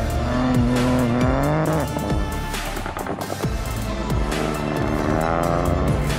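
Peugeot 208 Rally4's turbocharged three-cylinder engine revving hard, its pitch climbing twice: in the first two seconds and again near the end. It is mixed with background music that has a steady beat.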